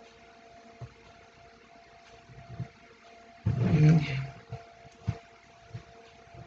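Faint handling sounds of yarn being worked over the pegs of a wooden knitting loom: a few soft knocks and taps, over a steady faint hum.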